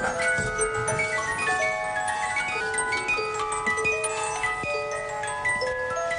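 Music box playing a melody: a steady run of small, bright plucked notes that ring and die away, often several sounding together.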